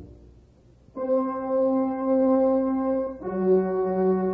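Brass music bridge in a radio drama: after a brief pause, one long held brass note, then a second, lower held note.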